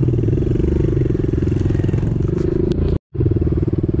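Pit bike engine running at a fairly steady throttle while being ridden along a dirt track. The sound cuts out for an instant about three seconds in, then carries on.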